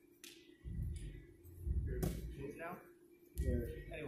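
Two grapplers shifting their weight on a foam jiu-jitsu mat: dull low thumps and rubbing in several bursts, with a few light slaps. A short, faint voice comes in about halfway through and again near the end.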